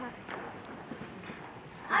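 A few light footsteps knocking on a stage floor, with a voice starting loudly near the end.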